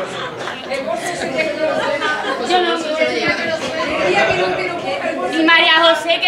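Indistinct chatter of several voices talking over one another in a room, with one voice coming through more clearly near the end.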